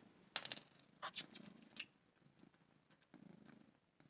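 Domestic cat purring softly, with a few faint clicks in the first two seconds.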